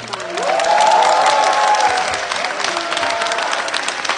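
Concert audience applauding and cheering at the end of a saxophone quartet's performance, with high whoops over the clapping in the first two seconds. The ensemble's last low held note cuts off at the very start.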